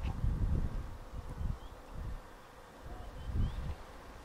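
Wind buffeting the microphone in uneven low gusts, with footsteps brushing through long grass. A few faint high bird chirps come in about halfway through.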